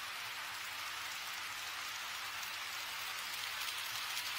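HO-scale model trains running on KATO Unitrack: a steady whirring hiss of metal wheels and small motors on the track, getting a little louder near the end as a train comes closer.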